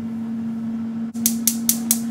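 Gas stove burner's igniter clicking four times in quick succession a little past a second in as the burner is lit, over a steady hum.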